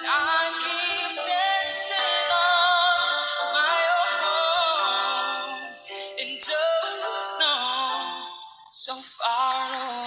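A man singing a pop song over a backing track, holding notes with a waver. The voice breaks off briefly twice, around six seconds and just before nine seconds in.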